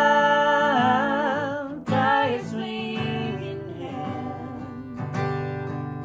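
A man and a woman singing together over a strummed acoustic guitar. A long held note, wavering with vibrato, ends about two seconds in, and the guitar and voices carry on.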